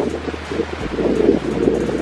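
Wind buffeting the camera microphone: a steady, muffled low rumble.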